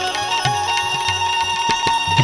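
Indian devotional folk music: tabla playing, with deep bass-drum strokes that bend in pitch, under a melody instrument that holds one high note after a short rising slide near the start.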